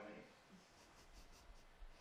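Near silence: room tone, with a few faint soft rustles about a second in.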